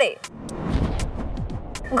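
A low rushing whoosh with a few falling tones, lasting about a second and a half: a television transition sound effect.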